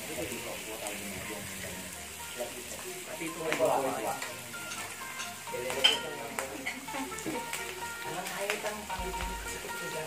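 Slices of pork belly sizzling steadily on a grill pan over a portable gas stove, with metal tongs clacking against the pan now and then; the loudest clack comes a little before the middle.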